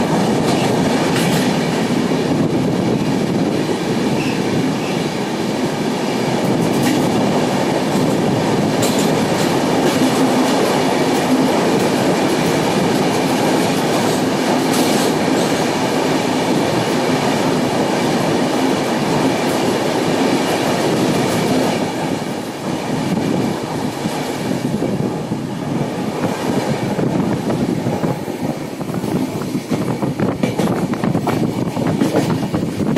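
Deccan Express coaches running through a railway tunnel: a loud, steady rumble of wheels on rail with clickety-clack, echoing off the tunnel walls. About two-thirds of the way through the sound becomes thinner and more uneven as the train comes out of the tunnel.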